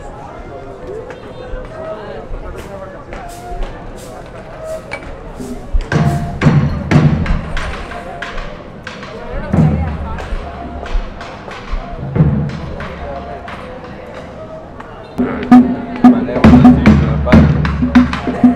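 Drumming and music with crowd chatter. The sound is at first mostly voices and scattered clicks. From about six seconds in, loud bursts of drum strikes cut in, and near the end the drumming turns loud and continuous.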